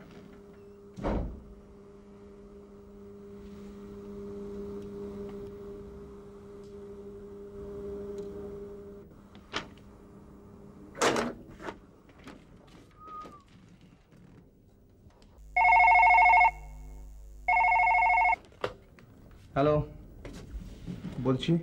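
A telephone rings twice near the end, two loud electronic rings of about a second each, a second apart. Before them there is a steady low hum and a few soft knocks.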